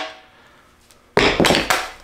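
A hand grabbing and knocking the fiberglass fin of a rocket fin can. After a quiet moment, there is a quick cluster of knocks and scraping about a second in.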